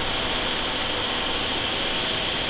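Steady, even hiss of background noise, with no distinct clicks or knocks.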